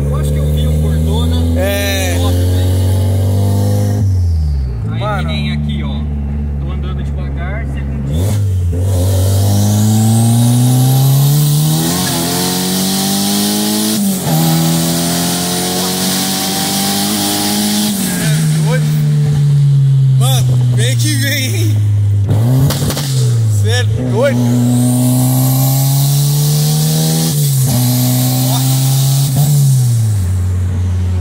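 Turbocharged VW Gol G2's engine heard from inside the cabin, accelerating through the gears: the engine note climbs steadily, drops at each gear change, and the pattern repeats several times, with one stretch where it falls away as the throttle eases.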